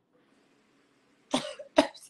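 A person coughs twice, short and sharp, about a second and a half in, after a near-silent pause.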